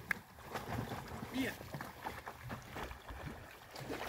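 Faint lapping and sloshing of lake water against a jetty as a swimming dog's wake spreads out, over a low rumble of wind on the microphone.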